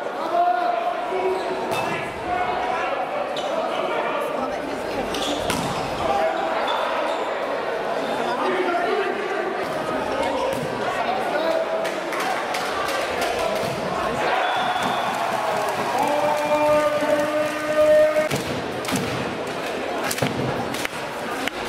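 Volleyballs being struck and bouncing on a hard indoor court, a scatter of sharp slaps echoing in a large sports hall, over a steady murmur of voices.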